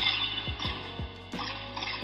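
Dramatic cartoon soundtrack: orchestral score under a rushing whoosh effect, crossed by repeated low thuds that fall in pitch about twice a second.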